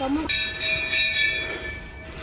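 A temple bell rung, starting suddenly about a quarter second in with several clear ringing tones that fade slowly.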